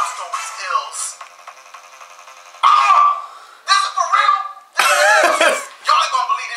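Speech in short bursts with a quieter gap of about a second and a half after the first second, and faint music underneath.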